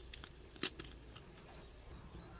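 Plastic screw cap being twisted off a bottle, faint, with a short sharp click a little over half a second in.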